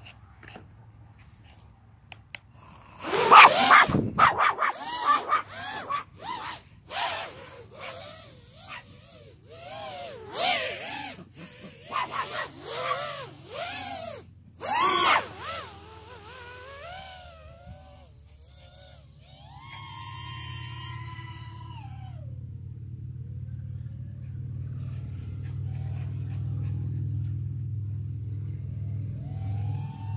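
A dog barking and yelping excitedly at a drone in a rapid string of high, arching calls through the first half. Then a quadcopter drone's steady low motor hum grows louder toward the end.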